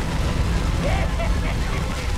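TV drama sound mix of a house fire: a heavy, steady low rumble with a woman's short frightened whimpers about a second in.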